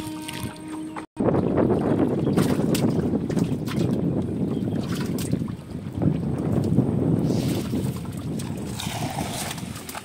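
A cast net thrown from a small wooden boat, landing on the river in a spattering splash of its weighted rim late on, over a loud, rough, low rushing noise that sets in suddenly about a second in.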